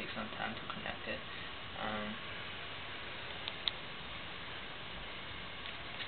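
Quiet room tone, a steady low hiss, with a man's short hummed "mm" about two seconds in and two faint clicks a little past halfway.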